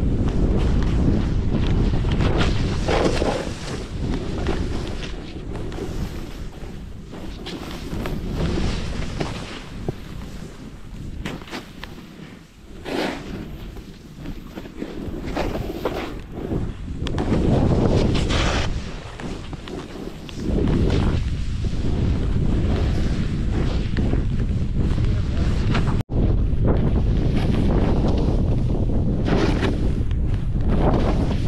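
Wind buffeting an action camera's microphone, together with a snowboard running through deep powder snow. The noise swells and fades with the turns and breaks off for an instant near the end.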